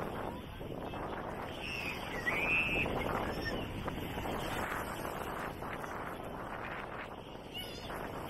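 Busy beach crowd: many overlapping voices of bathers talking and calling, with a short high-pitched shout or squeal about two seconds in.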